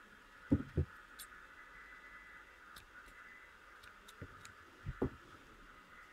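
Quiet handling of small crochet work and tools: two soft knocks about half a second in, a few faint light ticks, and two more soft knocks near the end, over a faint steady background hum.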